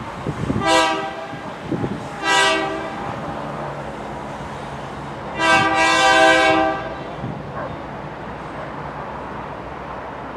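Diesel locomotive air horn sounding two short blasts and then a longer one, over the low rumble of the locomotive running on the rails.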